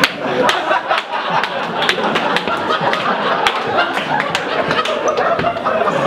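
A large audience laughing loudly, with scattered hand claps.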